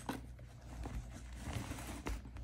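Soft rustling of a non-woven fabric dust bag, with a few light taps, as a glossy zippered case is slid out of it and handled on a countertop.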